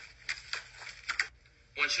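Cardboard side flaps of a pizza box being torn off by hand: a few short ripping and crackling noises.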